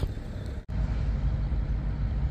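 Low, steady rumble of outdoor background noise, which cuts out for a moment about two-thirds of a second in and then comes back.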